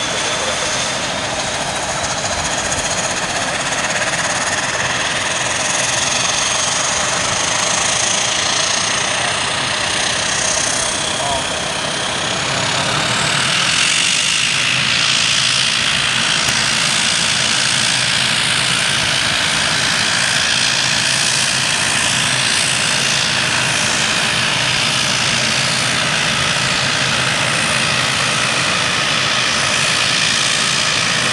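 ATR-72 turboprop engines running with the propellers turning, a steady whine and propeller drone. It grows a little louder and brighter about halfway through.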